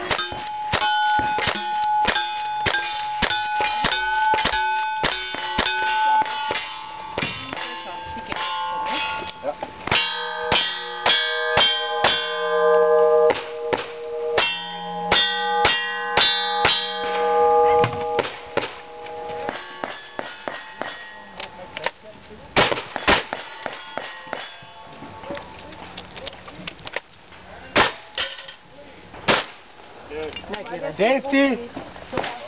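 Rapid gunshots, each hit ringing as a clang on steel plate targets, in a fast string through the first half with rifle fire and then revolver fire. After that come fewer, more widely spaced shots, with a shotgun in use by the end.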